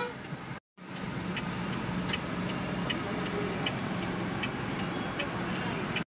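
Steady engine and road noise inside a moving car's cabin, with a turn-signal indicator ticking evenly, about once every three-quarters of a second.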